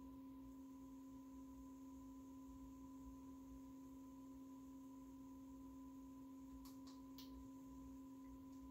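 Near silence except for a faint, steady, unchanging tone with a few overtones; a few faint ticks come near the end.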